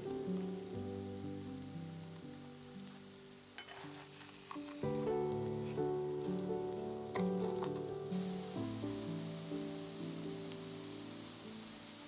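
Lentil patties sizzling as they fry in oil in a nonstick pan, with a few short clicks and scrapes of a spatula as they are turned. Soft background music with held notes plays throughout.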